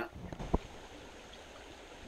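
Shallow small stream running over rocks, a steady rush of water, with a single short knock about half a second in.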